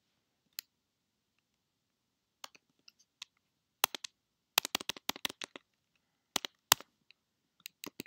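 Computer keyboard keys clicking in irregular bursts: a few scattered presses, then a quick run of a dozen or so keystrokes in the middle, then a few more near the end.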